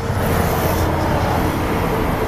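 Steady low rumble of outdoor background noise, with a faint steady hum.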